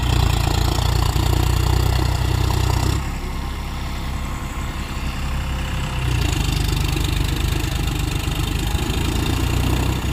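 John Deere 5045D tractor's three-cylinder diesel engine running while the tractor sits bogged in mud. It is louder for the first three seconds, drops about three seconds in, and rises again about six seconds in.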